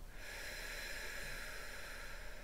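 A long, steady breath drawn through the nose, heard as a soft hiss lasting about two seconds.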